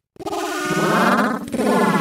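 A dense cacophony of heavily distorted, layered cartoon audio: several warbling pitched tones overlap at once. It starts after a brief dropout at the very beginning.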